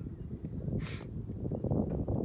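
Wind buffeting the microphone: an irregular low rumble, with a brief hiss just before a second in.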